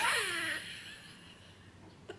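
A woman laughing: one breathy laugh that falls in pitch and fades out about a second in.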